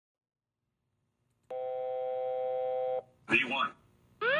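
A steady electronic cockpit warning tone, held for about a second and a half after a silent start, then a brief clipped voice fragment near the end.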